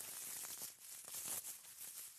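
Dried hawthorn leaves and flower clusters crackling and rustling as a hand stirs and lifts them on a drying rack, a faint crisp crackle. The crisp sound is the sign that the hawthorn is fully dry.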